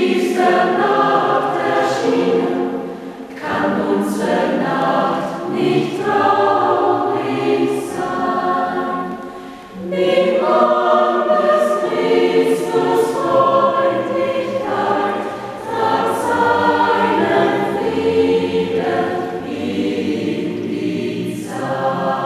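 Mixed choir of men's and women's voices singing a German Christmas hymn in parts, line by line, with short breaks between phrases roughly every five or six seconds.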